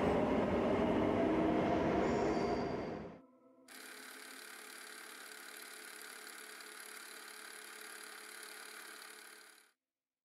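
Metro train running along the platform, a steady rushing noise that fades away about three seconds in. After a short silence, a faint steady hiss follows and cuts off near the end.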